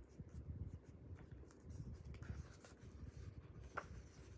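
Faint rustling and soft ticks of a hardcover book being handled and opened, its paper pages and dust jacket rubbing together, with one sharper tick near the end.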